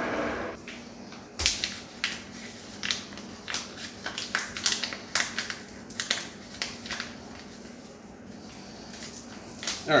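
Paper flour sack being pulled and worked open by hand: a run of irregular sharp crinkles and crackles of stiff paper that thins out near the end, with a faint low steady hum underneath. The sack's top is a stubborn one to open.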